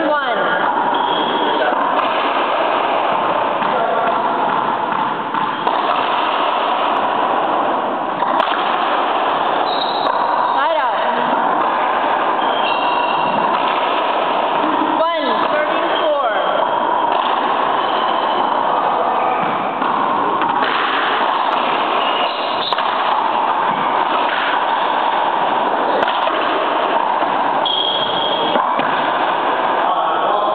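Indistinct chatter of several voices under a steady, dense background noise, with a few brief sharp sounds.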